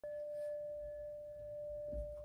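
Singing bowl ringing with one steady tone and a fainter higher overtone that fades out, with a soft knock near the end.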